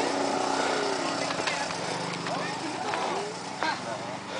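Voices chattering around a motocross pit area, over the steady low running of a small dirt-bike engine at idle.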